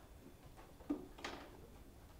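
Quiet room tone, with a single faint click about a second in followed by a brief soft hiss.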